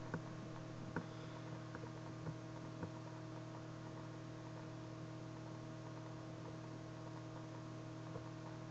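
Steady, faint electrical hum on the audio line, with a few faint clicks in the first three seconds.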